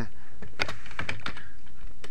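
Computer keyboard being typed on: a run of irregular key clicks as a word is typed letter by letter, over a steady background hiss.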